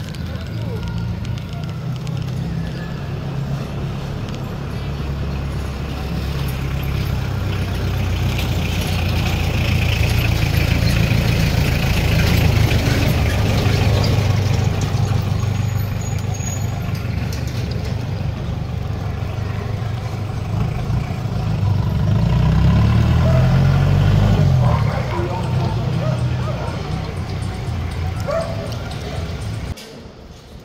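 Outdoor city street ambience: a loud, uneven low rumble throughout, swelling twice, with indistinct voices of passersby.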